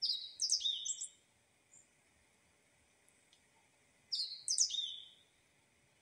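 A small songbird singing two short phrases of quick high chirping notes that step down in pitch, the second about four seconds after the first.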